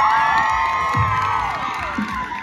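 A crowd of children cheering and shouting together, many long high whoops overlapping and trailing off near the end.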